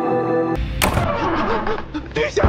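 Sustained dramatic film score that cuts off abruptly about half a second in. A sharp crash follows, then a jumble of action-scene sound effects.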